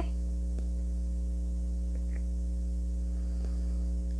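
Steady electrical mains hum with a faint static hiss.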